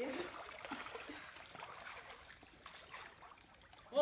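Faint water sounds of people swimming in a river pool: quiet lapping and paddling, with no distinct splash.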